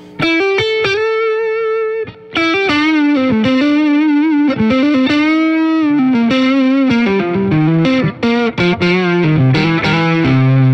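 Chambered swamp-ash S-style electric guitar on its neck single-coil pickup, played overdriven: a lead line of sustained notes with finger vibrato and string bends. It starts with a sudden attack and breaks off briefly about two seconds in.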